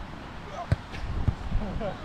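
A beach volleyball struck hard by a player's hand: one sharp smack about two-thirds of a second in, then a softer hit about half a second later as the ball is played back.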